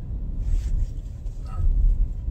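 Low road and engine rumble inside a moving car's cabin, swelling near the end, with a brief hiss about half a second in.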